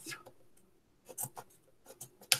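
Scissors cutting a stiff plastic strip that is hard to cut, with a few faint snips about a second in.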